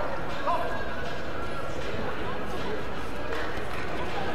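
Indistinct voices of people in a large sports hall over a steady background din, with a short call about half a second in.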